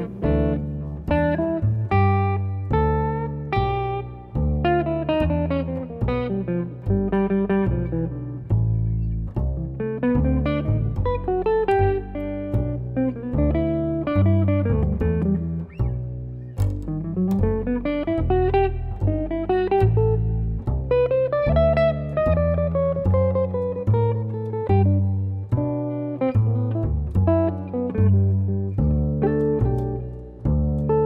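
Jazz trio music: a hollow-body electric jazz guitar plays running single-note lines, rising and falling, over a plucked double bass walking steadily underneath.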